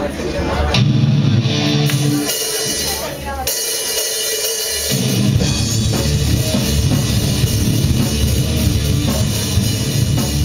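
Live rock band playing loud: electric guitars and a drum kit. The low end drops out for about a second and a half near the middle before the full band comes back in.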